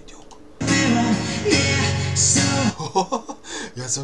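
Live acoustic rock music: strummed guitar with a man singing. It comes in loud about half a second in and drops back just before three seconds, giving way to quieter voice.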